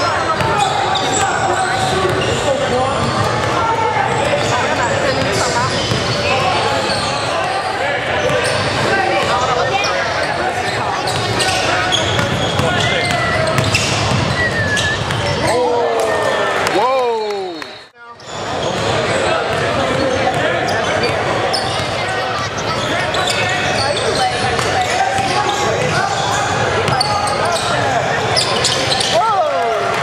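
Basketball game in a gym: crowd voices and shouts echoing in the hall, with a ball bouncing on the court. The sound dips out briefly a little past halfway.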